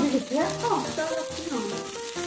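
Pork belly slices sizzling on an electric tabletop grill, with background music over it.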